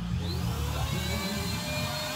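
A small electric motor whirring steadily over a low rumble, its pitch rising during the first second as it spins up, then holding.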